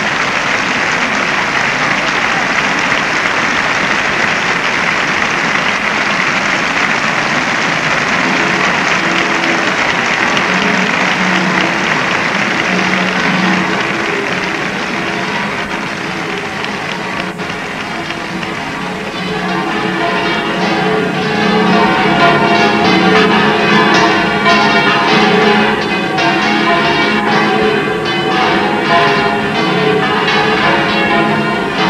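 A large crowd applauding, the applause thinning in the second half as the 25 bells of the Giralda's belfry start ringing all at once. From about twenty seconds in, the clangour of the bells is the main sound; their ringing together marks the close of the concert.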